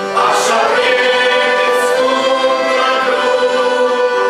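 Mixed voices singing a Christian hymn in harmony, accompanied by accordions, with a new sung phrase starting just after the beginning.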